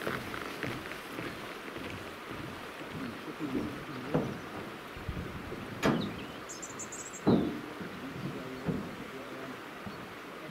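Boot footsteps on a wooden footbridge deck, heard as a few separate dull thumps at irregular intervals over a steady outdoor hiss. A brief high chirping comes about seven seconds in.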